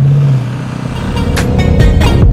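A car engine running loud at high revs for about half a second, then dropping away. Electronic music with a heavy beat comes in about a second in.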